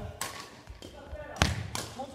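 Badminton rackets striking shuttlecocks and players' feet thudding and stepping on a wooden gym floor, echoing in a large hall. There are three or four sharp hits, and the loudest, heaviest thud comes about one and a half seconds in.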